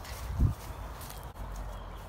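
Footsteps on grass, with one heavy low thump about half a second in and a steady low rumble on the microphone.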